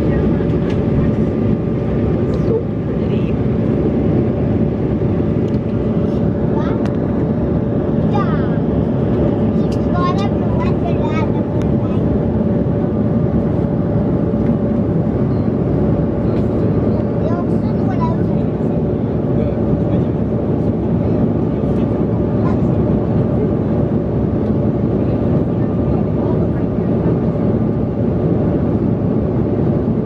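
Steady drone of an airliner cabin in flight: engine and airflow noise with a constant hum. Faint voices come through now and then, most around eight to twelve seconds in.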